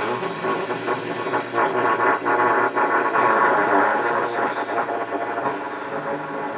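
Dense, harsh wall of overlapping trumpet tones, many pitches sounding at once with a noisy edge, swelling louder in the middle.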